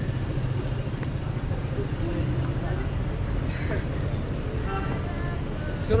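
City street traffic: a steady low rumble of vehicle engines, with snatches of passers-by's voices.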